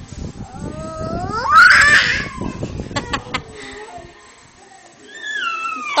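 A small child's high-pitched squeal that rises steeply in pitch over about a second and is loudest near its top, over the rumble of the phone being handled. A few sharp clicks follow, and a second call gliding down in pitch begins near the end.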